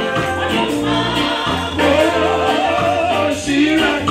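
Live gospel music: a lead singer on microphone with the congregation singing along, over a band with steady bass and percussion. About halfway through, a held sung note wavers in vibrato.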